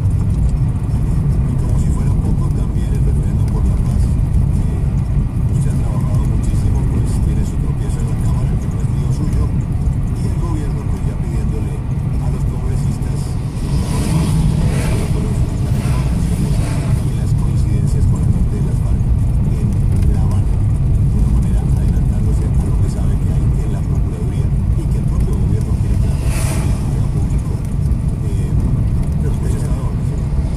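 Car cabin noise while driving downhill: a steady low rumble of engine and tyres on the road. An oncoming bus passes in the middle, with a brief rush of noise.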